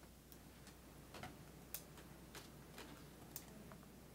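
Faint footsteps of high-heeled shoes, light clicks about two a second, over near-silent room tone.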